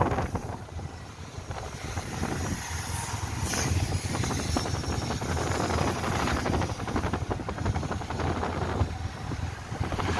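Motorbike engine running while riding, with wind rushing over the microphone.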